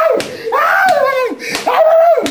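A man wailing in pain in long, high cries that rise and fall, with sharp slaps of blows landing between the cries.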